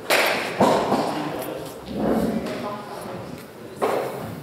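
Indistinct voices echoing in a large sports hall, with loud sudden bursts at the start and near the end.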